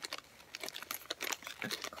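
Thin clear plastic bag of acrylic beads crinkling in the hands as it is held and turned, in irregular small crackles.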